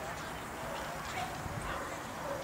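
Faint short dog barks over a low outdoor background with faint voices.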